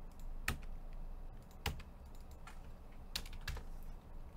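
Computer keyboard keys clicked several times at uneven intervals, a few sharp taps with quieter ones between.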